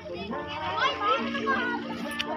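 Several children's voices overlapping, calling out and chattering as they play, with some high-pitched calls among them.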